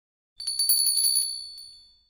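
Bell-ringing sound effect for a notification bell: a small, high-pitched bell rung rapidly, starting about half a second in and fading away over about a second.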